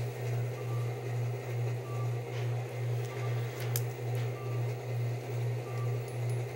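A loud low hum pulsing about twice a second, with a faint, evenly spaced high beep about every two-thirds of a second, like an operating-room heart monitor.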